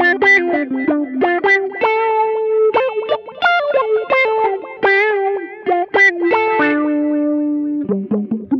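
Electric guitar through effects playing a melodic run of quickly picked single notes, settling into a longer held note near the end.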